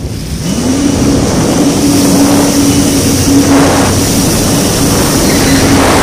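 Yamaha WaveRunner jet ski engine revving up about half a second in and holding at high revs under way. Water and wind rush over it, and it eases off near the end.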